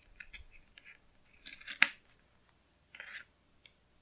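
Paper stickers and washi tape being handled on a planner page: light ticks and rustles, a sharp snip a little under two seconds in, and a short scraping rasp about three seconds in.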